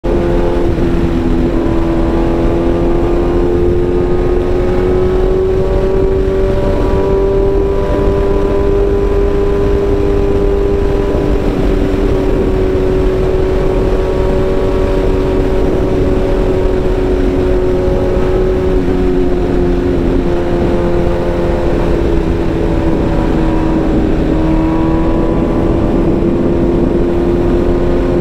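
BMW S1000RR M Carbon's inline-four engine pulling steadily at highway speed, heard from the rider's seat over steady wind rush. The engine note holds nearly level, sags slowly about two-thirds of the way through, then climbs again near the end.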